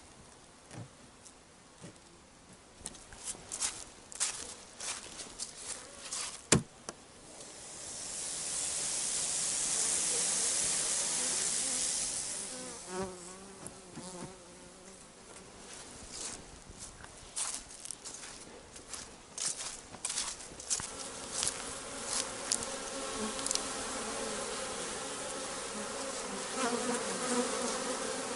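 Honeybees buzzing as they fly around the hives on their last autumn cleansing flight, the buzz thickening over the second half. Scattered taps and knocks in the first few seconds, one sharp knock about six and a half seconds in, and a rush of hissing noise for a few seconds near the middle.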